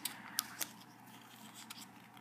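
Paper being folded and handled by fingers during origami: faint rustling with a couple of small crisp clicks about half a second in.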